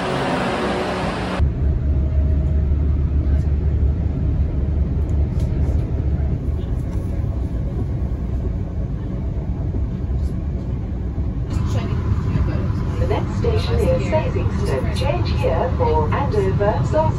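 Steady low rumble of a passenger train running, heard from inside the carriage, after about a second of louder platform noise at the start. Near the end an on-board announcement voice comes in over the rumble.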